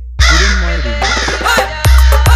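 DJ 'humming bass' remix music: after a brief break, a heavy bass hit opens a long, deep bass hum under a processed voice sample, and near the end the drum beat comes back in with hard bass kicks.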